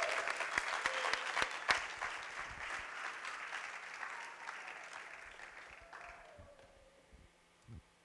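Audience applauding, loudest in the first two seconds and dying away over about six seconds.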